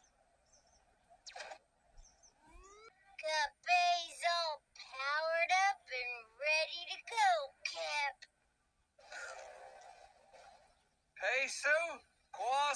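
Cartoon characters' voices speaking in short phrases with wide swoops in pitch, the words not made out clearly. A brief rising tone sounds about two seconds in, and a short rushing noise comes a little after the voices stop.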